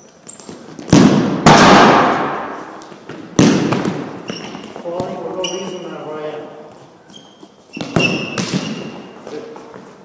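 A futsal ball being shot, bouncing and caught on a hard gym floor: five sharp bangs that echo through the large hall, the loudest a little over a second in, with a second pair near the end. Short high squeaks come between them.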